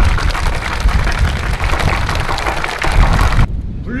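Audience applauding: dense, steady clapping that stops abruptly about three and a half seconds in.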